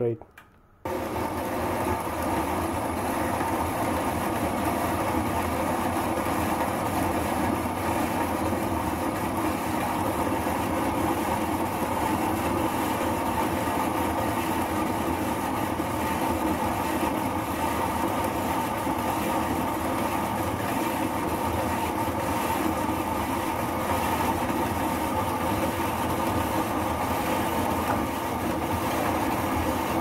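Horizontal metal-cutting bandsaw starting about a second in, then running steadily as its blade cuts through a steel bolt held in the vise.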